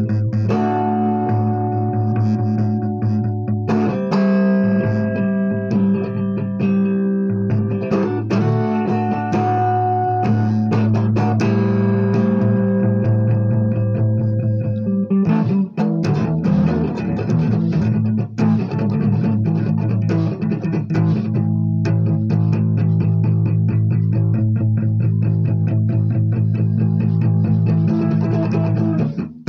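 Electric guitar strummed in sustained chords with full low notes, the chords changing every few seconds.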